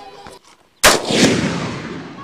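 A single sharp rifle shot about a second in, its report echoing and dying away over the following second.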